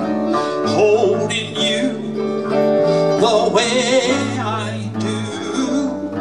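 Live acoustic guitar strummed over an electric bass line, with a wavering melody on top.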